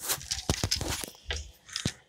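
Plastic Lego pieces clicking and scraping as the fire truck's water cannon is handled by hand: a quick run of sharp clicks about half a second in and another click near the end.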